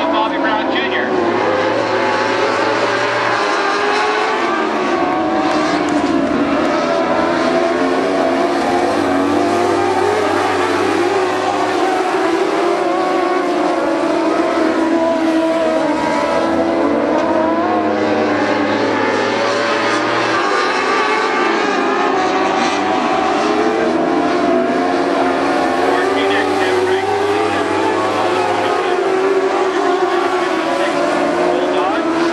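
A pack of dwarf race cars running together on a dirt oval, their small motorcycle-type engines blending into one continuous drone whose pitch rises and falls as the cars go through the turns.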